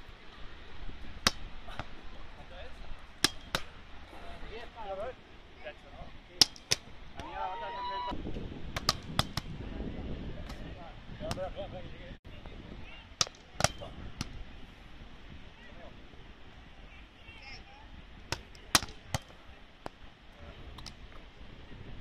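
Volleyballs struck by players' hands and forearms in passes and sets: sharp slaps at irregular intervals, sometimes two or three in quick succession.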